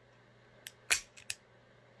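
Ruger Super Redhawk Toklat .454 revolver, empty, dry-fired double action: a few sharp metallic clicks of the trigger, cylinder and hammer, the loudest about a second in.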